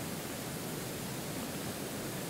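Steady, even hiss of room tone and recording noise, with no other distinct sound.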